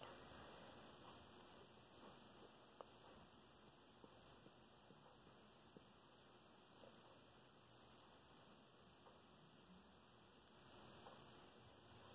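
Near silence: room tone with a faint steady hiss and a few tiny scattered clicks.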